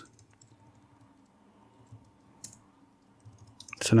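Two faint computer keyboard keystrokes, about two and two and a half seconds in, as text is deleted in a code editor, over a faint low hum.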